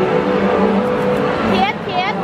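Dense crowd noise of many voices talking at once, with a high-pitched cry from one voice near the end.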